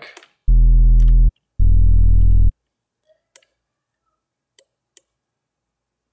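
Sub bass from the Sytrus synthesizer in FL Studio, a harmonic-rich waveform with its highs filtered off by a parametric EQ, played as two held low notes of about a second each. A few faint mouse clicks follow.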